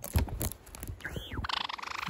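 A few handling knocks, then about halfway in a white Java sparrow starts a fast, buzzy rattling call, the angry chatter of an agitated bird.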